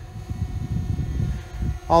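Low, uneven rumble of wind buffeting the microphone, with a faint steady hum underneath.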